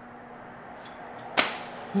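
A single sudden, sharp swish-like hit about one and a half seconds in, fading quickly, over low background hiss.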